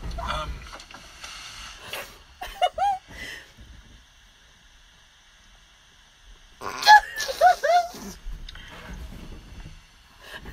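A person laughing in short, high-pitched squealing bursts, in two bouts about two and a half and seven seconds in, with a quiet stretch between.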